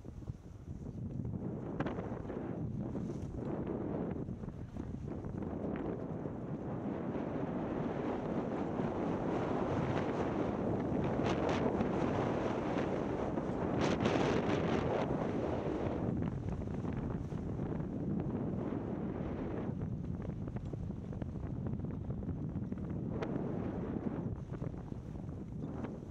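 Wind buffeting the camera microphone during a downhill ski run, mixed with the hiss and scrape of skis on snow. It builds after the first second and is loudest about halfway through, with quick scraping streaks, then eases and swells again toward the end.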